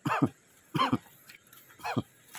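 A man's voice making three short wordless vocal sounds, each a fraction of a second long, spaced roughly a second apart.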